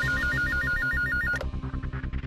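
Electronic desk telephone ringing, a rapid warbling trill flipping between two pitches, cut off abruptly about a second and a half in as the handset is picked up. Background music pulses underneath.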